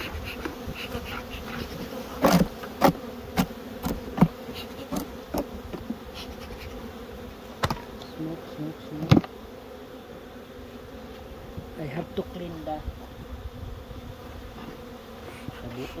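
Swarm of honeybees buzzing steadily around opened hives. Several sharp knocks from hive equipment being handled cut through it, the loudest about two to four seconds in and again around nine seconds.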